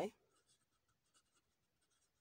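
Faint scratching of a pen writing on notebook paper, in a few short strokes.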